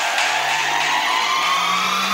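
Psytrance breakdown with the kick drum dropped out: sustained synth pads over a rising noise sweep, with slowly rising high synth lines and a low synth note that steps up in pitch about one and a half seconds in.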